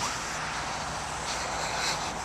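Steady road traffic noise, swelling slightly near the end as a vehicle passes.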